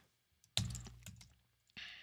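A few faint computer-keyboard keystrokes as a search is typed into a browser.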